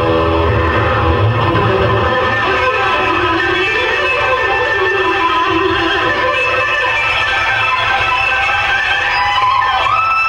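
Electric guitar solo from a recorded hard rock track, its sustained lead lines bending and gliding in pitch over a low bass.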